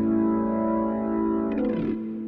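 Closing chord of a rock and roll song on guitar, held with a slow sweeping effect; about a second and a half in a note slides downward, and the chord then rings on.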